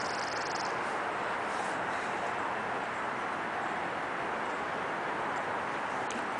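Steady outdoor background noise: an even hiss at a constant level, with no engine running and no distinct knocks or clicks.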